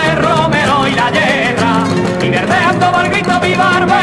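Sevillanas song: a voice singing over flamenco-style guitar with a steady beat.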